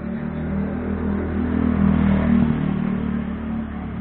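A motor vehicle's engine running close by, with a steady low hum. It grows louder about halfway through and then eases off.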